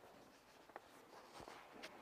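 Near silence in a church: quiet room tone with a few faint soft clicks and rustles.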